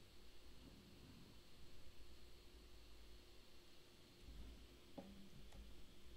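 Near silence: room tone with a faint low hum, and two faint clicks near the end.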